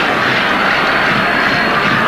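Steady stadium crowd noise, an even wash of many spectators' voices with no single sound standing out.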